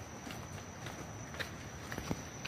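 Footsteps in flip-flops and sandals on a dirt forest path: light slaps and scuffs at a walking pace, about two a second, with a steady high-pitched tone behind them.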